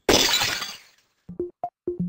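A glass-shattering sound effect that dies away within about a second. After a brief gap, electronic music starts with short, clipped notes, several of them in quick succession.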